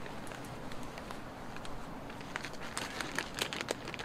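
A climber's hands and rubber-soled shoes scraping and tapping on a granite boulder: a scatter of small scuffs and clicks that comes thicker in the second half, over a steady outdoor hiss.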